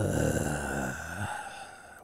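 A man's long, drawn-out sigh trailing off, his voice and breath slowly fading away.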